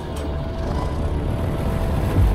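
A low, steady rumble with faint music tones over it, growing slightly louder.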